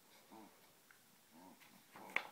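Near silence, with two faint short vocal sounds about a second apart.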